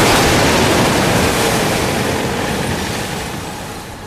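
A van carrying a large, partly filled water tank capsizing in a corner, thrown over by the sloshing water: a loud rushing noise that swells just before and fades slowly over about four seconds.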